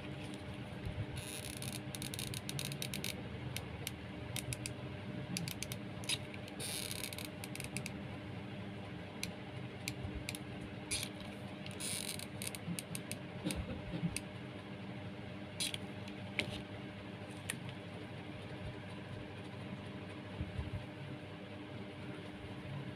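Hand-crafting noise: jute twine rustling and a plastic cup crinkling as they are handled and pressed together, with scattered small clicks and brief rustles. A hot glue gun is used about halfway through, and a faint steady hum runs underneath.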